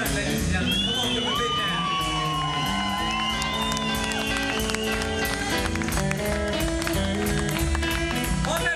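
Live blues band playing: electric guitar over steady bass and drums, with some crowd noise. Long held high notes ring out over the band about a second in and fade after a few seconds.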